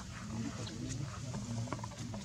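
A few short, low monkey calls over a steady low hum.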